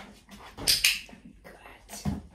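A dog working on a plastic fitness platform and an inflatable balance disc. There are two short hissing sounds close together a little under a second in, and a soft thump near the end as a paw lands on the disc.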